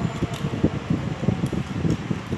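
Low, fluttering rumble of a fan's moving air buffeting the microphone, irregular and continuous.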